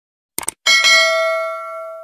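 Subscribe-button animation sound effect: a quick double mouse click about half a second in, then a bright bell ding, struck a second time right after, that rings on and fades away.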